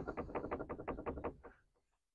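Latched wooden frame door rattling lightly in its frame as it is shaken by hand, a quick run of light knocks lasting about a second and a half. The latch leaves only a little rattling play, so the door is not flapping much and should hold in the wind.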